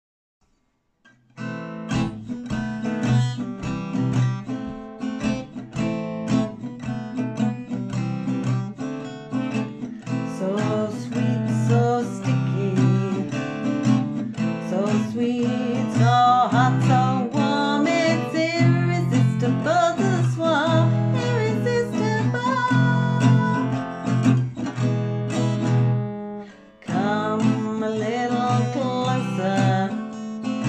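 Acoustic guitar strummed steadily in a song's introduction, starting about a second and a half in, with a short break shortly before the end.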